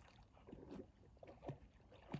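Faint sloshing and a few soft splashes of water as a large dog wades through a shallow pond.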